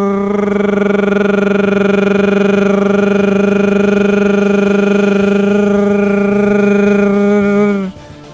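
A man's voice holding one long, steady, drawn-out vocal note for nearly eight seconds, stretching out the end of the word 'süper' as a comment written with a long run of repeated letters is read aloud. It breaks off shortly before the end.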